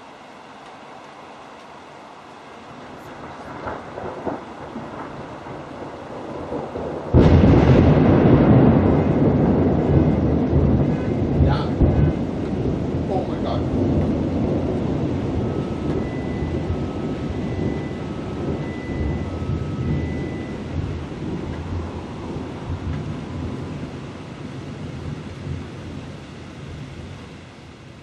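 A close thunderclap: a rumble builds, then a sudden loud crack about seven seconds in, followed by a long rolling rumble that fades over some twenty seconds. During the rumble, a car alarm set off by the strike beeps in two alternating tones.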